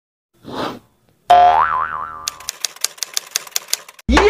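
Cartoon-style sound effects for a logo intro: a short burst of noise, then a loud boing with wobbling pitch a little over a second in, followed by a fast run of typewriter-like ticks, several a second, that last to the end.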